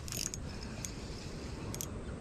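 Shimano Soare spinning reel being cranked: a faint, even winding with a few light ticks.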